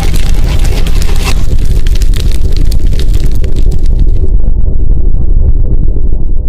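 Cinematic fire-blast intro sound effect: a loud, deep rumble with dense crackling that thins out about four seconds in, leaving the low rumble.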